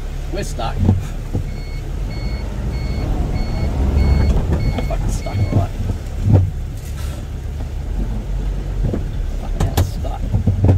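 A vehicle's reversing alarm beeps seven times at an even pace over a low engine rumble: the stuck truck is in reverse, trying to back out of the river.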